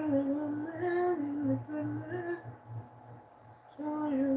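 A woman singing a slow tune in short held notes that step up and down, breaking off after about two and a half seconds and starting again near the end.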